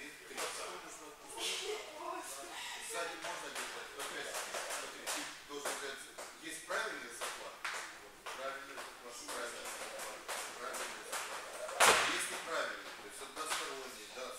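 Indistinct talking echoing in a large training hall, with scattered short knocks and one loud sharp crack about twelve seconds in.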